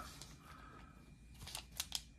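Stacks of wax-paper trading-card packs being handled and set down on a wooden table. A few short crinkly clicks come in the last half-second; before that it is quiet.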